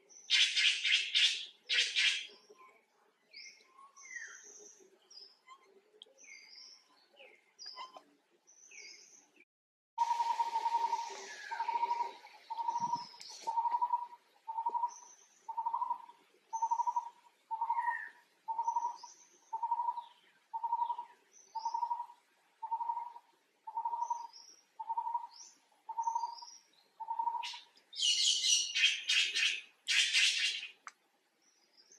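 Birds calling outdoors: loud bursts of chattering near the start and again near the end, scattered short chirps, and from about ten seconds in one bird repeating a single clear note about once a second, some eighteen times.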